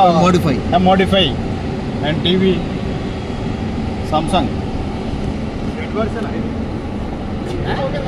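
Voices talking in short stretches over a steady background noise, mostly in the first few seconds and again around the middle.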